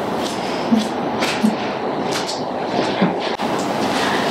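Hair-cutting scissors snipping through wet hair, several short cuts about a second apart, over a steady background noise.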